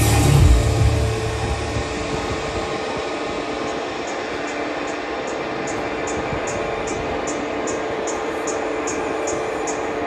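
Bass music on a club sound system: heavy bass for about the first two seconds, then the bass cuts out into a breakdown of hissing wash and one held tone, with a high tick about three times a second coming in from about the middle.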